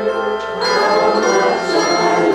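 Handbell choir ringing a tune: chords of sustained, ringing bell tones, with new chords struck about half a second in.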